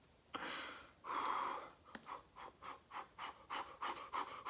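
A man's nervous breathing: two long breaths, then quick short panting breaths, about five a second.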